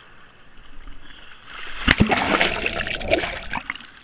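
A person flopping backward into sea water: a sudden loud splash just before two seconds in, then water rushing for about a second and a half.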